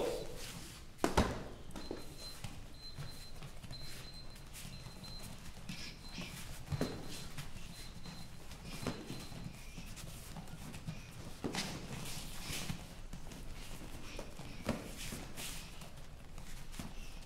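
Boxing gloves thudding on gloves and bodies, and bare feet shuffling and stepping on foam mats during light sparring. The thumps come at irregular intervals, and the loudest is about a second in.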